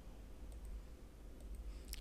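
Quiet room tone with a steady low hum and a few faint clicks, the sound of a computer mouse clicking the lesson on to the next slide.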